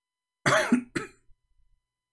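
A voice saying "cool" with a short laugh or chuckle: two brief bursts about half a second and one second in.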